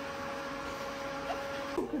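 Steady machine hum with a faint, thin, high steady tone running through it. It breaks off suddenly near the end.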